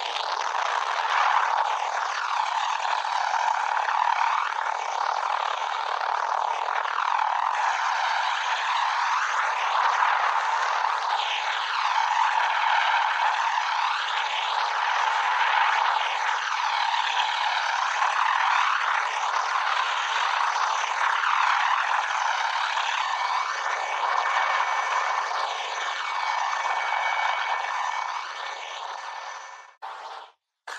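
Helicopter noise: a steady, thin rushing hiss with no deep rumble, slowly swirling in tone, fading out near the end.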